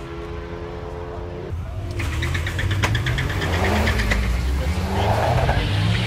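A drag-racing vehicle's engine at the drag strip, humming steadily, then revving and getting louder from about a second and a half in. A rapid, regular crackle runs through it for a couple of seconds as it accelerates.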